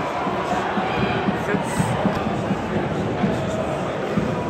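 Football stadium crowd: a dense mass of supporters' voices shouting and chanting at a steady level, with no single event standing out.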